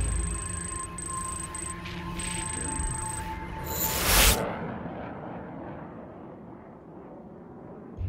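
Film score and sound design: high electronic beeps and steady tones over a low drone, then a whooshing swell that peaks in a loud hit about four seconds in and fades slowly away.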